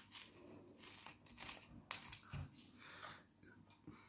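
Near silence with faint scattered clicks and crinkles from a plastic soda bottle being handled, and a soft low thump a little past halfway.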